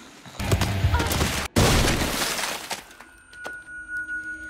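Dramatic TV sound effects: two loud bursts of crashing, shattering noise split by a sudden cut, then a steady high-pitched ringing tone near the end.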